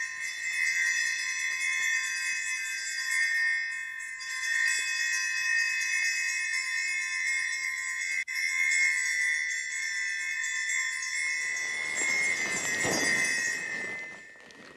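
Altar bells rung continuously at the elevation of the consecrated host, a steady bright jingling ring with a brief break about eight seconds in, stopping near the end.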